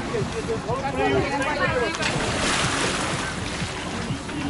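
A swimmer splashing into the sea beside a boat's ladder, a rush of water noise about halfway through, with people's voices around it.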